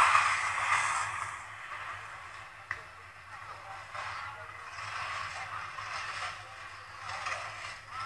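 Ski-racing broadcast sound heard through a television speaker. A loud burst of noise at the start fades over about two seconds into the uneven hiss and scrape of slalom skis on snow, with faint voices underneath.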